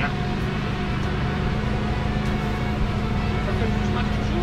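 A steady hum at one constant pitch, without a break.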